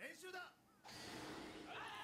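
Faint dialogue from an anime episode playing quietly in the background. A short spoken line, a brief gap, then a soft steady hiss with a voice again near the end.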